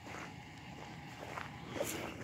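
Faint footsteps on a forest floor scattered with twigs and cut branches.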